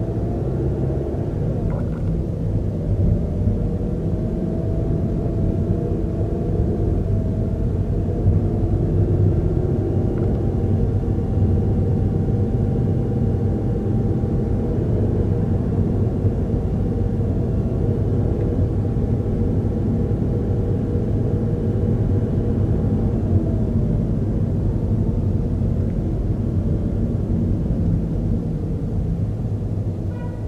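Steady low rumble of a car driving, heard from inside the cabin, with a faint whine that rises over the first several seconds, holds, and falls away about three-quarters of the way through.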